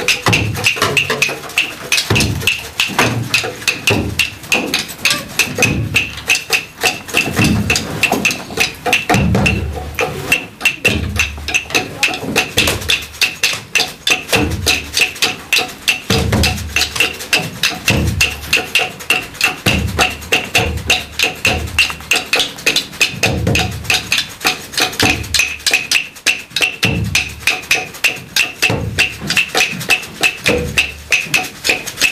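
Rhythmic wooden percussion: sticks beating on wooden boxes, a fast steady clicking over deeper thuds.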